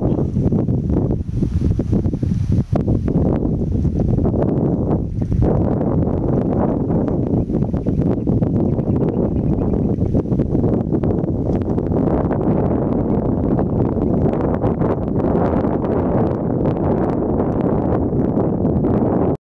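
Wind buffeting the microphone outdoors: a loud, steady, low rushing noise with no clear pitch.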